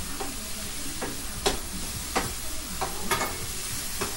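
Garlic and green onion frying in a pan on a gas stove over turned-up heat, a steady sizzle. A utensil clicks sharply against the pan about three times as it is stirred.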